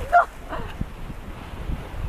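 Wind buffeting the microphone over the rush of choppy sea water, with a brief high excited vocal exclamation right at the start.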